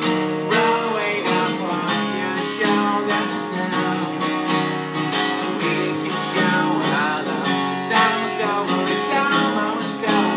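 A six-string acoustic guitar strummed in a steady rhythm, with a man singing over it: a live solo acoustic song.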